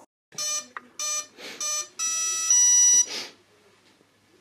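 Brushless RC motor and ESC start-up beeps as a LiPo battery is plugged in: three short beeps, then two longer tones at different pitches, the last one the loudest. These are the tones an ESC plays through the motor windings to show that power is on and it is arming.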